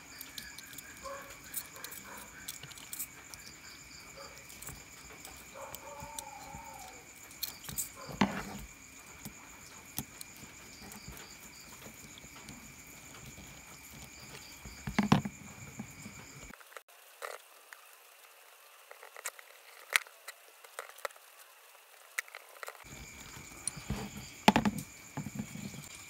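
Scattered small metal clicks and taps as screws, nuts and metal connector strips are fitted to the terminals of a four-cell LiFePO4 battery holder and tightened with a screwdriver. A steady high chirring of crickets runs underneath.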